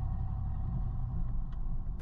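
2022 Nissan Rogue driving at parking-lot speed, heard from the rear hitch area: a steady low rumble of engine and road noise.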